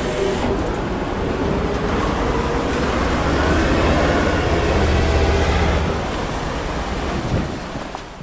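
M3 amphibious rig's engine running as the vehicle drives into a river, with water rushing and splashing around its hull. The low engine rumble swells in the middle and eases near the end.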